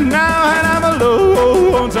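Male voice singing a yodelled line in a 1962 country-pop recording, the held notes breaking sharply between higher and lower registers about a second in, over a band backing with a steady beat.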